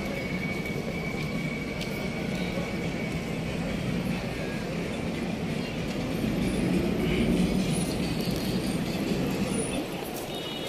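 Street traffic at a city junction: a steady rumble of cars, swelling as a vehicle passes about seven seconds in.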